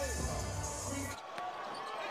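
Background music with a heavy bass beat that cuts off suddenly about a second in, giving way to live basketball game sound with a ball bouncing on the court.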